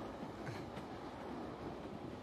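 Steady running noise of a passenger train, heard from inside the carriage.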